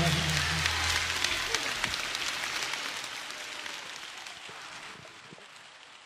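Concert audience applauding at the end of a song, a dense patter of clapping that slowly fades away. The band's final chord dies out about a second in.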